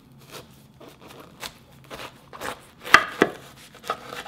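Kitchen knife cutting a whole pomegranate in half on a wooden board: a run of short cutting strokes through the rind, with two sharper knocks about three seconds in.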